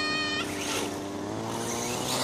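Radio-controlled car's motor running steadily with an engine-like hum, its pitch climbing a little between about one and one and a half seconds in.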